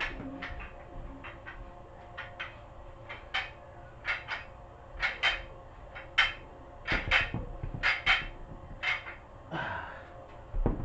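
A man's short, forceful breaths through the mouth while exerting through a dumbbell set, often in quick pairs about once a second and louder in the second half, over a faint steady hum.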